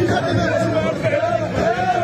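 A group of men chanting together in wavering phrases, over a dense crowd of voices.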